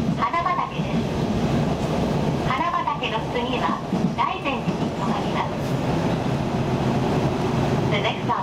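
Steady running noise heard inside a Nishitetsu limited-express electric train car at speed, with voices talking indistinctly over it.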